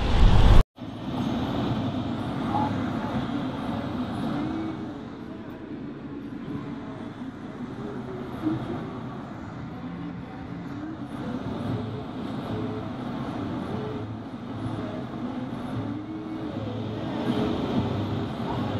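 Steady road and engine noise inside a moving car's cabin, with faint muffled voices underneath.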